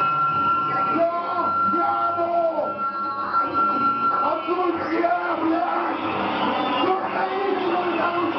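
Live noise-music performance: wordless vocal sounds, wavering and bending in pitch, sent through a microphone and PA, over a steady high tone that stops about halfway through.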